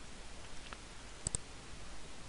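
Computer mouse clicked twice in quick succession about a second in, over faint steady hiss, with a fainter single click a little before.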